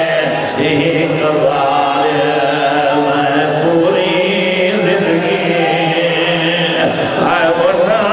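A man's voice chanting a mourning lament into a microphone in a long-drawn, sung recitation, with held and wavering notes.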